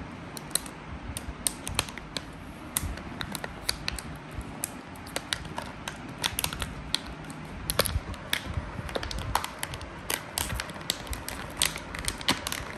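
Stiff clear plastic blister packaging being handled and pulled at by hand: irregular crinkles and sharp clicks, more frequent in the second half.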